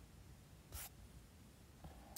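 Near silence, broken once, about a second in, by a brief paper rustle: a book page being turned.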